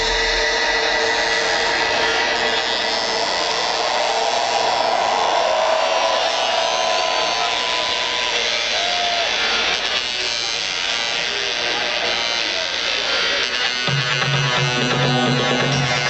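Live electronic dance music from a DJ set, heard from within the crowd: a breakdown with the kick drum gone, leaving a buzzy synth and crowd voices. A low bass line comes back in near the end.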